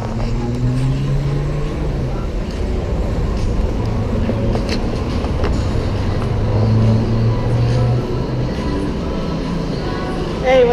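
Street traffic: a motor vehicle engine running with a low, steady hum over general road noise, swelling a little past the middle.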